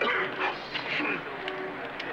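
Young men's voices yelping and howling like dogs in a string of short pitched calls, a catcall at women walking past.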